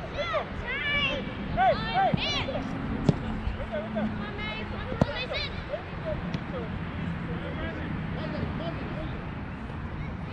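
Distant shouts and calls from children playing on a soccer field, several short high calls close together at first and fewer later, over a steady low rumble. Two sharp knocks stand out, about three and five seconds in.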